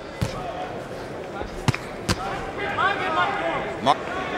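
Sharp thuds of boxing-glove punches landing, four separate hits, two of them in quick succession near the middle, over arena crowd noise.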